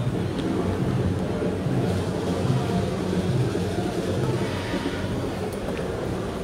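Indistinct crowd noise: many voices and people moving, mixed with a steady low rumble.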